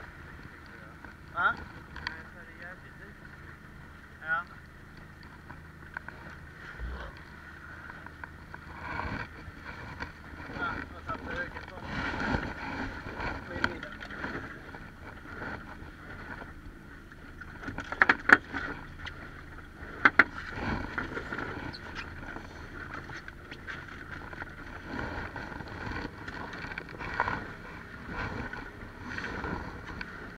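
Wind and water around a small fishing boat, with rustling and knocks of gear and gloved hands being handled on board; the loudest are a few sharp knocks a little past the middle.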